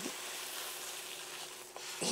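Dry red lentils poured from a plastic bag onto baking paper in a quiche tin and spread by hand, as pie weights for blind baking: a faint, steady grainy rustle.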